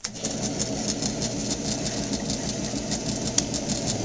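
Omation EV2 envelope verifier switched on and running: a sudden start into a steady hum of motors and feed and conveyor belts, with a rapid regular ticking as envelopes feed through one after another. A single sharp click about three and a half seconds in.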